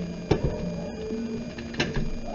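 Faint music with held notes, and two sharp clicks, one about a third of a second in and one near the end.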